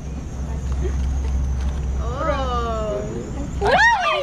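People's voices in wordless exclamations: a drawn-out falling "aww"-like call about halfway through and a louder rising-and-falling cry near the end. Under them runs a low steady rumble that stops shortly before the cry.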